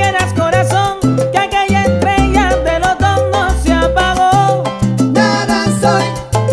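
Live salsa orchestra playing an instrumental passage: a trumpet-led brass line over a stepping bass, piano, congas, timbales and güiro.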